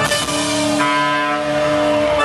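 Live Bulgarian wedding-band music from clarinet, accordion and keyboard holding a long sustained chord, with the drum beat dropped out.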